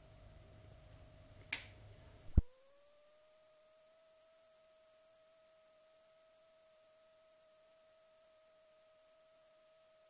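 A short snap, then a sharp click about two and a half seconds in, after which the room noise cuts out and a faint, steady electronic tone with a higher overtone is left, gliding up slightly before it settles.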